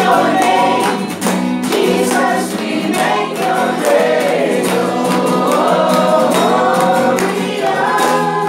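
A small mixed group of men and women singing a worship song together in unison, accompanied by a strummed acoustic guitar.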